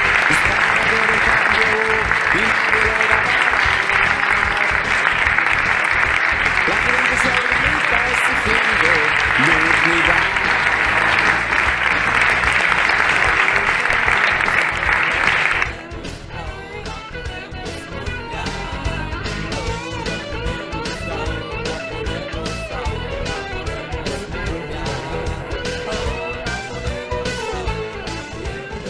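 A crowd applauding over a guitar-backed song. About halfway through, the applause cuts off suddenly and the music carries on alone, quieter.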